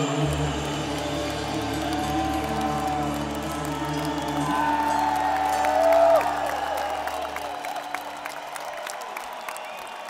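Heavy metal band's closing chord held and ringing out through the arena PA, with guitars and bass sustaining over a cheering, whooping crowd. The low bass note cuts off about seven and a half seconds in, leaving the crowd's cheering to fade.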